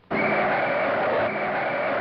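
Street traffic: a truck and cars driving past, the noise starting abruptly just after the start.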